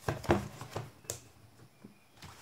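Handling noise from a fabric-covered Chuwi Vi10 keyboard case being lifted, flipped and opened on a table: about four short knocks and rubs in the first second, then quieter.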